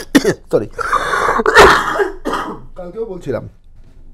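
A man coughing and clearing his throat: a harsh, rasping stretch lasting about a second, starting roughly a second in, with a few spoken words around it.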